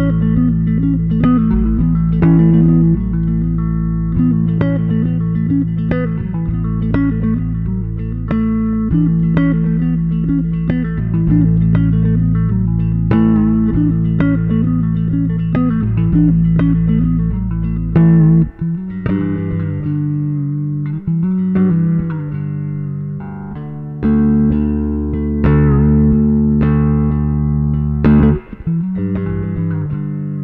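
Four-string Jaguar-style electric bass played fingerstyle: a melodic piece of plucked notes over held, ringing tones, with a change in texture about 18 seconds in.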